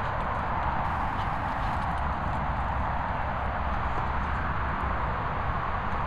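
Steady wind rumbling and buffeting on the microphone.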